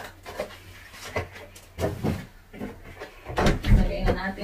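Household handling noises: a few light knocks and clicks, then heavier low thumps near the end, with the knock-and-thump character of a cupboard or door.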